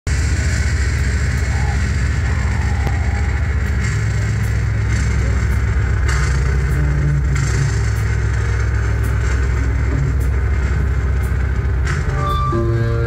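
Sludge band playing live: heavily distorted guitars and bass hold a loud, low droning rumble, with a few faint sharp hits above it. Right at the end it breaks into clearer ringing guitar notes.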